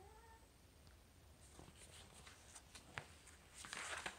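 Near silence, with a few faint clicks and the soft rustle of a picture-book page being turned near the end.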